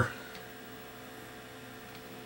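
Steady faint electrical hum from bench test equipment, with a single faint click about a third of a second in.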